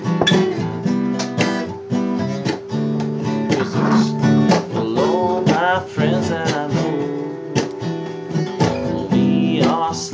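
Acoustic guitar strummed steadily in a song's instrumental intro, with a wavering, bending melody line over the chords in the middle of the passage.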